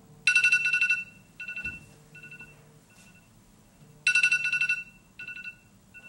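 Smartphone alarm tone ringing: a loud, quickly warbling electronic chime, then a few shorter, fading repeats. The pattern starts over about four seconds later.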